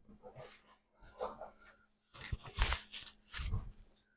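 Fabric rustling and scraping from a hard-shell laptop backpack's shoulder straps and a hooded sweatshirt as the backpack is slung on and the straps are pulled, in a few short irregular bursts.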